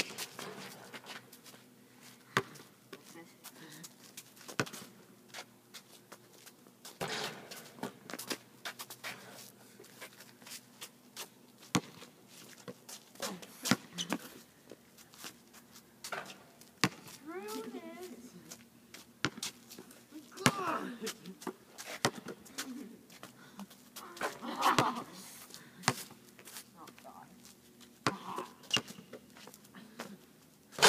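A basketball bouncing on an asphalt court and hitting the backboard and rim, as sharp, irregular thuds with gaps between them. Short shouts from the players come in a few times.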